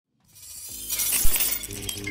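Logo-intro sound effect: a swell rising out of silence to a loud, bright crash with a low hit about a second in, then settling into a held musical chord.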